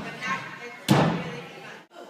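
A gymnast landing a tumbling pass on a landing mat: one heavy thud about a second in, over background voices in a large gym. The sound breaks off briefly near the end.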